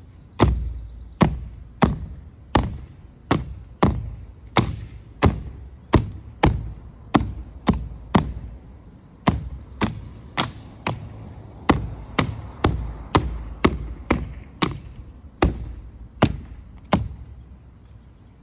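A tree branch loaded with paint slapped again and again against a stretched canvas, at a steady pace of about one and a half strikes a second. Each hit is a sharp smack with a short ring of the canvas after it.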